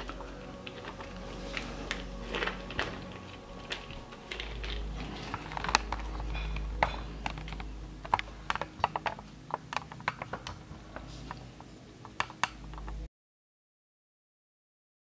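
Loose pebbles and crushed stone clicking and shifting as a boa constrictor crawls over them, in irregular sharp clicks over a faint low hum. The sound cuts off abruptly near the end.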